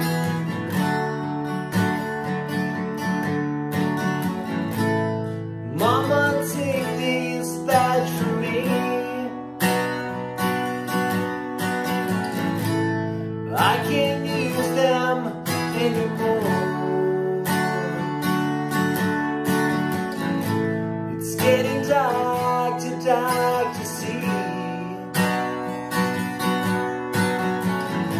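Acoustic guitar strummed in a steady rhythm, with a harmonica in a neck holder playing a melody over it that slides up in pitch three times.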